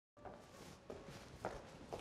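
Faint footsteps of high-heeled shoes walking on a hard floor, about two steps a second.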